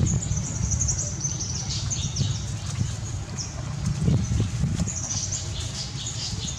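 Small birds chirping in quick, high calls, thickest near the start and again near the end, over a steady low rumble.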